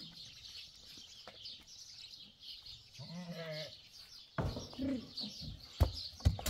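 A goat bleats once, a short wavering call about three seconds in. Near the end come a couple of sharp knocks, the loudest one just before the end.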